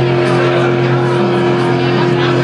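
Live rock band holding a loud, distorted chord through guitar and bass amplifiers, its low notes sustained at one steady pitch.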